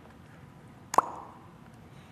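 A single short, sharp pop about a second in, with a brief falling tone, over low room tone.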